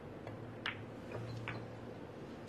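Billiard cue striking the cue ball in a sharp click, followed by fainter ball-on-ball clicks, the clearest about a second later, as the shot plays out on a Chinese 8-ball table.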